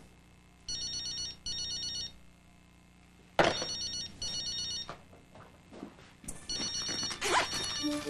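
A mobile phone ringing with an electronic ring: three pairs of short, high rings. A sharp thump comes about three and a half seconds in.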